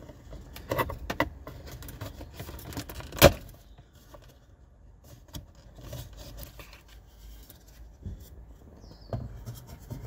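Plastic trim on a dash-top gauge pod being pried apart with a plastic trim removal tool: scraping and clicking plastic, with one loud sharp snap about three seconds in as a clip lets go.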